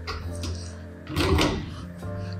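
Doors of a Whirlpool built-in wall oven and microwave being handled: a few light clicks, then a louder clunk about a second in as the microwave door is opened, over background music.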